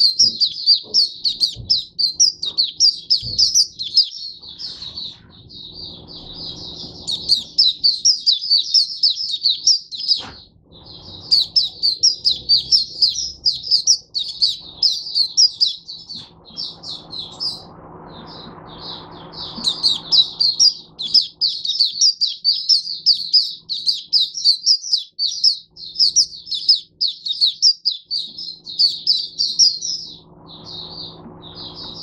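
A caged white-eye (mata puteh) sings a rapid, high-pitched twittering song in long runs, broken by a few short pauses.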